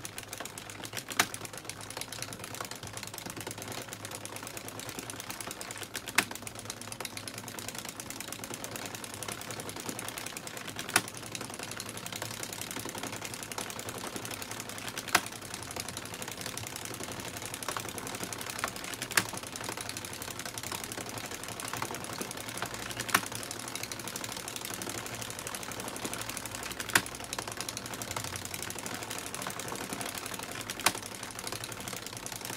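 Addi Express circular knitting machine being hand-cranked: its plastic needles and cam ring clatter steadily as they knit faux-fur yarn, with a louder click about every four seconds.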